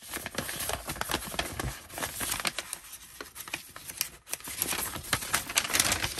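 A folded paper instruction sheet rustling and crinkling as it is unfolded by hand, with many small crackles throughout.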